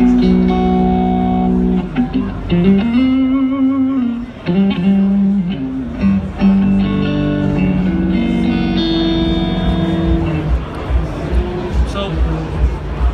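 Electric guitar played clean through a Waves software model of the PRS Archon amplifier: held notes and chords, with one note bent up and shaken with vibrato a couple of seconds in.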